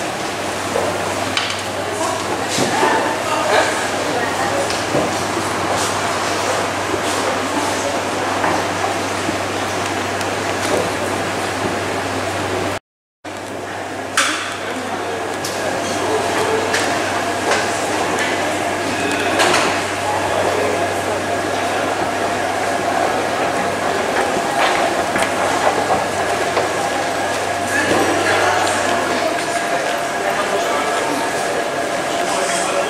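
Indoor ambience of an underground station reached by escalator: a steady low hum under indistinct voices, scattered clicks and footsteps, in a reverberant hall. The sound cuts out for a moment about 13 seconds in, then returns with faint steady whining tones added.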